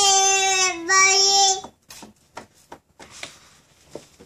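A toddler's high-pitched, drawn-out vocal squeal, held at a steady pitch in two long notes with a brief break between them, ending about a second and a half in. A few faint taps follow.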